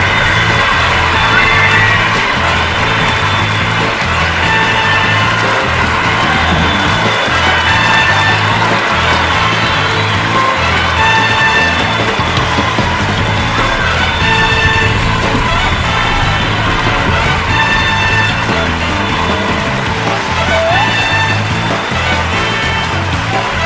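A band playing an instrumental passage with no singing: a steady bass line under short, repeated chords.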